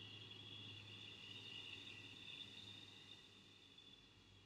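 Near silence with a faint, slow exhale through the mouth, heard as a thin steady high whistle that slowly fades over about four seconds, over a low steady hum.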